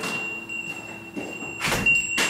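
Apartment front door swinging shut with a single loud thud about three-quarters of the way in.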